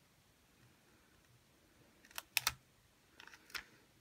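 A few short, light clicks and crinkles from a stiff vinyl decal sheet and its backing being handled and shifted on a craft mat, in a small cluster about two seconds in and a fainter one near the end.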